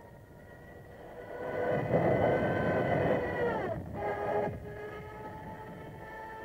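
An aircraft engine swelling louder over about two seconds, then dropping in pitch as it passes, over the sustained tones of a droning background score.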